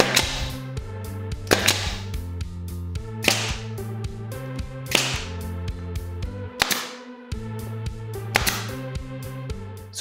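Pneumatic nail guns, a 15-gauge trim nailer and an 18-gauge brad nailer, firing nails into a wood block: six sharp shots, one about every second and a half, over background music.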